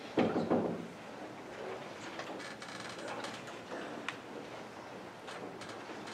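Knocks and scrapes of people moving about a darkened stage during a scene change. There are two louder thuds just after the start, then scattered light clicks and soft shuffling.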